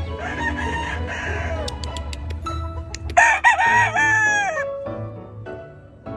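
Gamecock roosters crowing: a hoarser crow in the first second or so, then a louder crow about three seconds in whose last note falls away.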